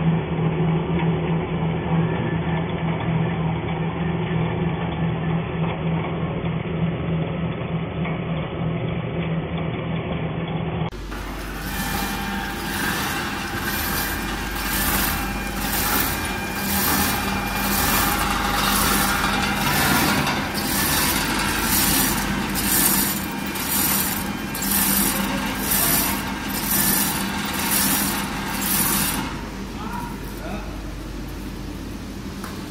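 Automatic shrink-wrap packaging machine running: first a steady motor hum from the conveyor. About eleven seconds in, this gives way to a brighter machine sound with a steady whine and a regular hissing pulse roughly once a second as it cycles.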